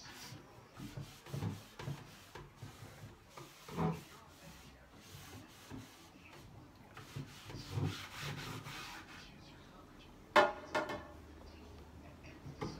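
Cloth rubbing clear paste wax over the sealed, sanded painted wooden top of a table: an irregular scrubbing swish with small knocks. A couple of sharp knocks about ten seconds in are the loudest sounds.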